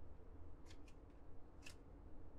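Upper Deck hockey trading cards being flipped through by hand, each card sliding off the stack with a short, faint swish: two close together a little under a second in, and a third about 1.7 seconds in.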